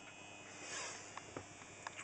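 Faint, steady hum and rush of a big air rotor fan running slowly on reduced power, held back by an electric heater wired in series as a soft-start ballast. A few faint ticks in the second half.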